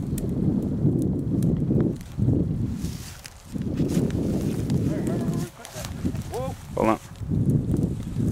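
Footsteps and rustling through tall dry grass and weeds, with heavy low rumble from handling or wind on the microphone, pausing briefly a few times. Near the end come a couple of short pitched calls.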